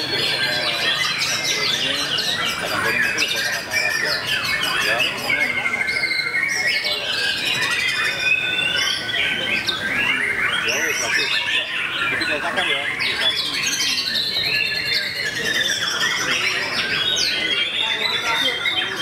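White-rumped shama song amid a dense chorus of caged songbirds: many overlapping whistles, trills and chattering phrases sounding continuously, with people's voices faintly underneath.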